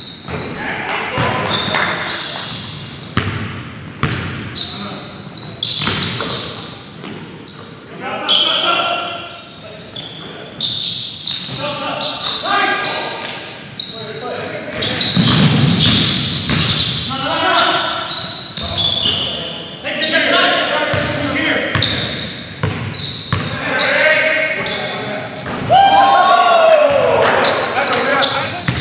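Basketball game in a gymnasium: a basketball bouncing on the hardwood floor amid players' indistinct shouts and calls, all echoing in the large hall.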